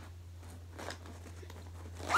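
Faint rustling and small clicks of pens, pencils and erasers being handled inside a fabric pencil pouch, over a steady low hum.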